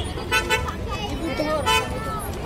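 Busy street sounds: car horns toot briefly twice, about half a second in and again near the end, over traffic and the chatter of people nearby.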